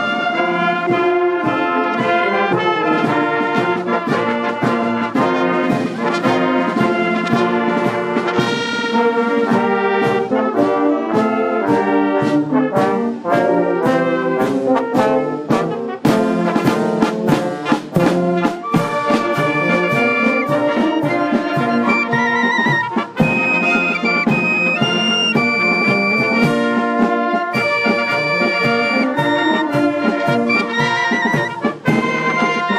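Village wind band playing: tubas, trumpets and other brass with a drum beat, joined by flutes and clarinets playing high notes and trills from about two-thirds of the way through.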